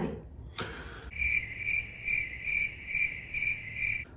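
High-pitched insect chirping, pulsing about two to three times a second, starting about a second in.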